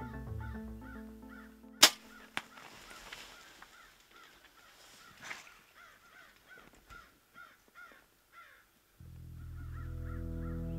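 A bow shot at a deer: one sharp, loud crack about two seconds in, then a fainter crack half a second later, after background music has cut out. Short calls repeat two or three times a second through the quieter stretch that follows, and music returns near the end.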